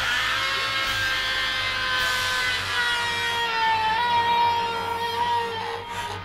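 A single long held musical note, one steady pitch drifting slightly lower over about five and a half seconds and fading just before the end, over a faint low hum.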